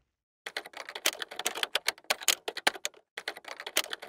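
Rapid typing on a keyboard, a quick irregular run of key clicks. It starts about half a second in, pauses briefly near the three-second mark, then goes on.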